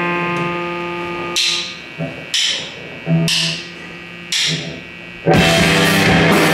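A live rock band starts a song. An electric guitar chord rings out, then four cymbal-and-bass accents land about a second apart, and the full band of drum kit, electric guitar and bass guitar comes in loud near the end.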